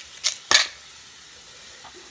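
Two short knocks about a third of a second apart, the second louder: a plastic toothpick container handled and set down on a wooden tabletop. Then only faint room background.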